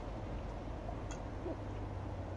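Steady low outdoor background rumble, with a brief click about a second in and a short, faint hoot-like sound about a second and a half in.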